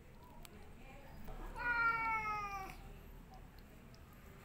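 Domestic cat giving one long meow, about a second long and falling slightly in pitch: a hungry cat asking to be fed.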